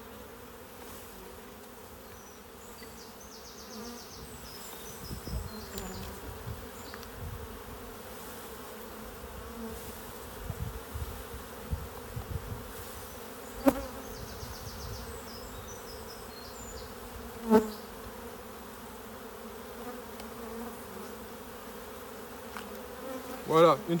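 A mass of honeybees buzzing in a steady hum as they are brushed off the front of a nucleus hive into the hive below. Two short, sharp knocks, one about 14 seconds in and another about 17 to 18 seconds in.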